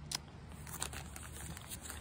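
Faint crinkling and rustling of a clear plastic zip-top bag being handled, with a few small clicks.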